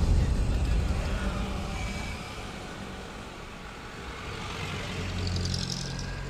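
Road traffic noise: cars and motorbikes driving past on a busy city road, a steady rumbling hum that eases off in the middle and swells again near the end.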